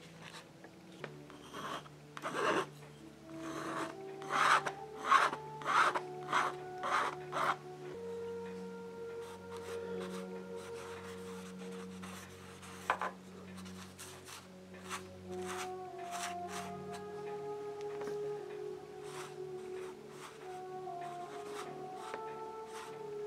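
Bristle paintbrush scrubbing and dabbing paint onto canvas in short rasping strokes, with a quick run of about eight louder strokes from about four to eight seconds in and sparser strokes after. Soft background music with long held notes plays underneath.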